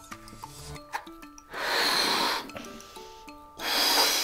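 A child blowing up a rubber balloon: two long puffs of breath blown into it, one about a second and a half in and one near the end.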